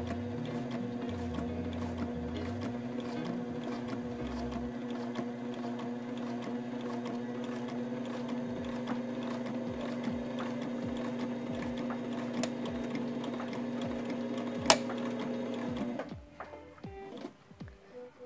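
Sailrite Ultrafeed LSZ-1 walking-foot sewing machine running steadily as it stitches through layered canvas, stopping about two seconds before the end.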